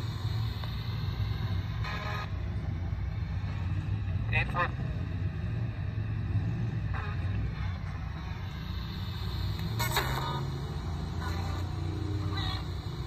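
RadioShack 12-587 radio used as a ghost box, sweeping through FM stations: radio noise broken every two or three seconds by brief snatches of broadcast sound, over a low steady rumble.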